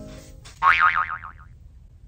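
Keyboard background music trails off, then a cartoon 'boing' sound effect with a wobbling, warbling pitch sounds about half a second in and dies away within a second.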